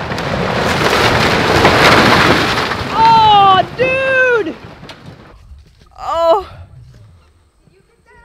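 Storm-damaged, century-old wooden barn collapsing: a loud crash of timber and roofing that lasts about three seconds and then dies away. It is followed by a woman's excited exclamations.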